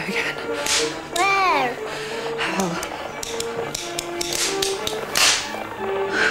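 Western soundtrack from a television: held music notes with several sharp cracks, the loudest about a second in and again near the end, and a falling, pitched cry just after the first crack.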